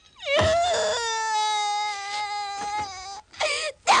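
A girl's voice wailing in anguish: one long cry that falls in pitch at first and is then held steady for about two seconds, followed by a short sob near the end.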